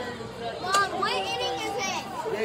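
Several teenage girls' voices calling out and talking over one another, high-pitched, with a sharp shout about three quarters of a second in.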